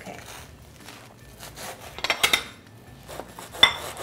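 Table knife sawing through a crisp toasted grilled cheese sandwich, the blade scraping the bread in short strokes, with one sharp metallic clink near the end.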